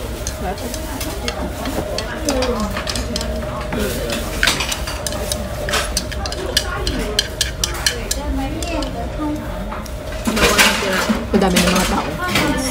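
Chopsticks stirring and mixing noodles in a ceramic bowl, with many small clicks and scrapes of the sticks against the bowl, over restaurant background chatter; a nearby voice is heard briefly near the end.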